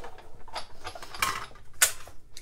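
Hand-cranked die-cutting machine being turned, rolling a die with card stock through its rollers: a few short mechanical strokes about half a second apart, the loudest near the end.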